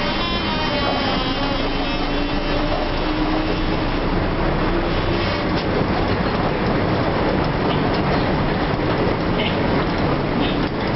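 Škoda 9TrHT trolleybus under way, heard from the driver's cab: a traction-motor whine that climbs slowly in pitch over the first few seconds as it gathers speed, over the steady noise of tyres and body, with a few light knocks later.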